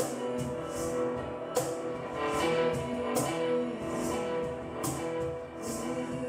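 Live ambient music: a guitar played over sustained, held chords, with short bright swishing accents recurring about once a second.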